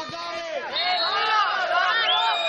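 Several men's voices shouting and calling out over one another on a football pitch, a jumble of voices rather than one speaker.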